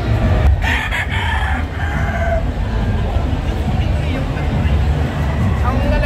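A gamefowl rooster crows once, starting about half a second in and lasting about two seconds, with the call falling away at its end. A steady low rumble runs underneath.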